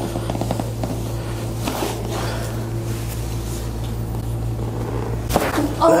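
Chiropractic leg-pull adjustment: after a few seconds of tension, a single sharp crack about five seconds in as a joint releases, followed at once by the patient's "Oh."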